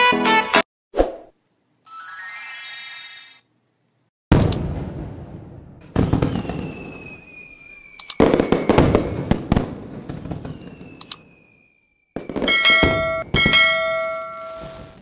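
End-screen sound effects. Background music stops just after the start, followed by a short swoosh and a brief shimmering tone. A string of firework-like crackling bursts with falling whistles comes next, and a bell-like chime starts near the end.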